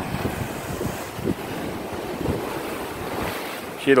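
Ocean surf washing against shoreline rocks, a steady rush, with wind buffeting the microphone.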